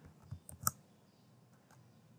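A few computer keyboard keystrokes in quick succession, clustered in the first second.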